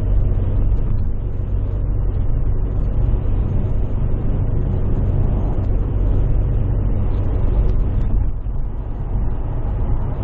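Steady road noise of a car cruising at motorway speed, heard from inside the cabin: a deep, even rumble of tyres and engine with a fainter hiss above it.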